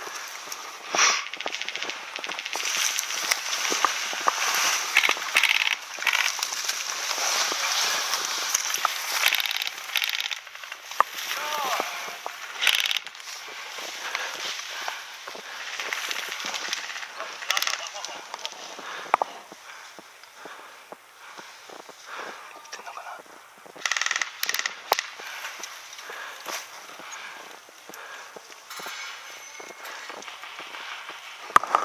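Dry grass and bamboo brush rustling and crackling as an airsoft player moves through it, mixed with scattered crackles of airsoft gunfire and voices.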